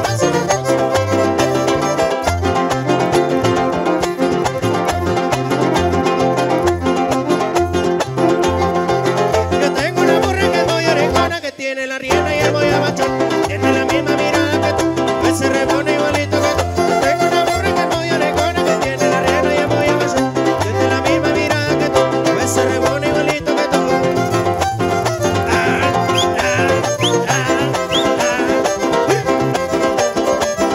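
A live string band plays a huapango: strummed and plucked strings over a steady alternating bass. The sound drops out briefly about eleven seconds in, then the music carries on.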